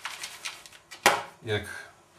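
A clear plastic food container set down on a wooden kitchen worktop: one sharp knock about a second in, after a little handling clatter.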